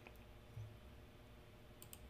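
Near silence with a few faint computer-mouse clicks, one at the start and a quick pair just before the end.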